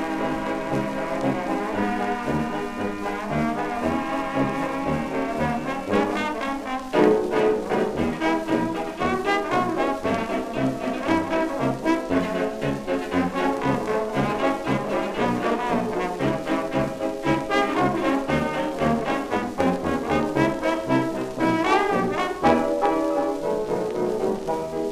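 1925 dance-orchestra recording played from a 78 rpm shellac disc, brass leading over a steady beat. It is a raw transfer, so the disc's surface noise is left unfiltered.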